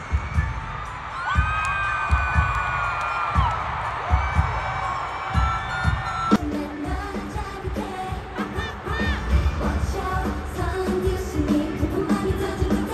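Live K-pop concert sound: a singer holds long, wavering notes over a heavy bass-drum beat. About six seconds in it cuts abruptly to another passage of the show, singing over the beat.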